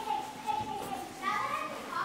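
Several children's high-pitched voices chattering and calling out at once, with no clear words.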